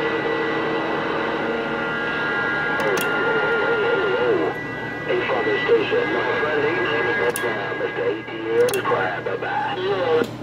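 Galaxy CB radio's speaker receiving other stations on the channel: steady whistling tones over hiss, then from about halfway warbling, garbled voices that cannot be made out, with a few short clicks.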